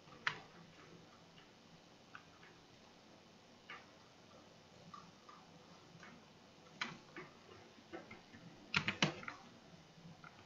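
Faint, scattered clicks of a computer mouse and keyboard, single ticks a second or two apart, then a quick run of several clicks near the end.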